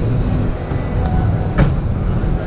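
Steady low rumble of a busy exhibition hall: crowd and hall noise with no clear voices, and a single sharp knock about one and a half seconds in.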